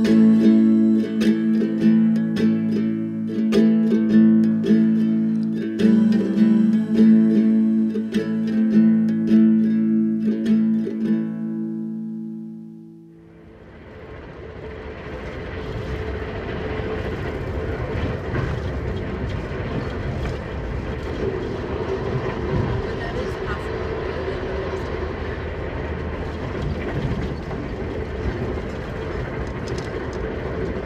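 A guitalele plays the song's closing chords, fading out about 13 seconds in. A moving VIA Rail passenger train's steady running noise then swells in and holds, heard from on board.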